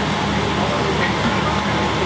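Steady whirring drone of several bicycles spinning on stationary turbo trainers during a pre-race warm-up, with voices in the background.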